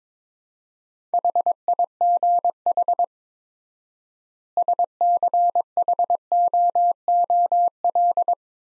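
Morse code sent at 22 words per minute as a single steady beep tone keyed into short and long elements. Starting about a second in, it spells "HIGH", then, after a pause of about a second and a half, "SCHOOL", which runs on near the end.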